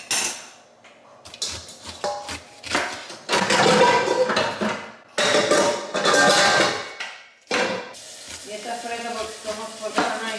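Knife cutting down through a pineapple's rind onto a cutting board, a few short cuts followed by two long slicing strokes in the middle, each about a second and a half long.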